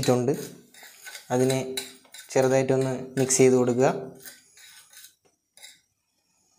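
A man's voice in pitched stretches without clear words, mixed with light clinks of a metal spoon against a glass plate; the clinks alone go on briefly after the voice stops, about four seconds in.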